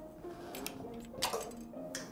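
Metal cutlery clinking as a fork and spoon are fiddled with and knocked together on a placemat: several light clinks, over soft background music.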